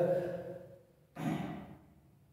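A man's short, sigh-like breath about a second in, fading away over about half a second.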